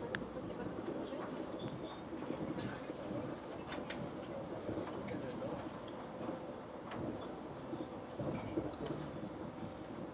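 Sapsan high-speed train running at speed, heard from inside the carriage as a steady running noise.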